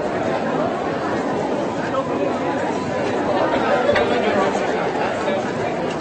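Steady babble of many people talking at once, crowd chatter with no single voice standing out.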